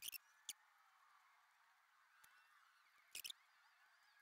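Near silence, broken by a few faint clicks of small metal indicator parts being handled: a couple at the start, one about half a second in, and a short pair a little after three seconds.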